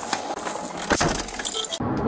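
Metallic jingling and rustling as a police officer climbs into a patrol car's driver seat, with a sharp click about a second in. The sound stops abruptly near the end.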